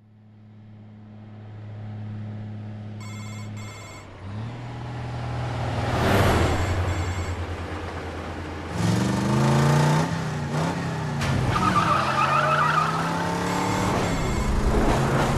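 Trailer sound effects: a low drone fades in, a brief electronic ring about three seconds in, and a whoosh swells about six seconds in. From about nine seconds vehicle engines rev up and down, with a tire squeal about twelve seconds in.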